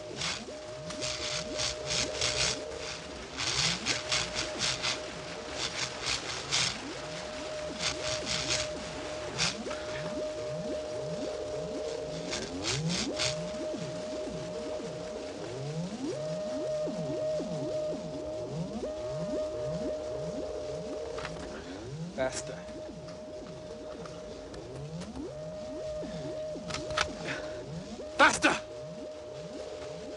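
Electronic sci-fi synthesizer score and sound effects: a steady high drone under a stream of short, low, rising synth sweeps, with bursts of crackling electrical zaps through the first half and one loud zap near the end.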